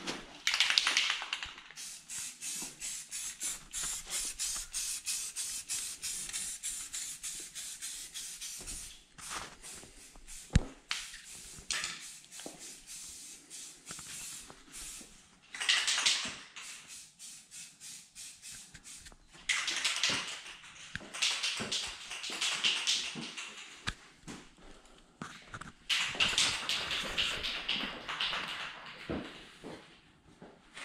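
Spray paint hissing out in bursts of a few seconds each, the first one long and fluttering, with a single sharp knock about ten seconds in.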